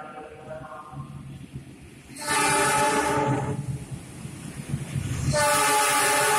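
Air horn of a CC 206 diesel-electric locomotive sounded twice as it pulls into the station: a blast of about a second, then a longer one starting about five seconds in. Between and under the blasts is the low running of the approaching locomotive.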